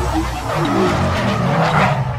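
Sound-effect car skid: a hissing tyre screech builds over a low engine rumble, with music underneath.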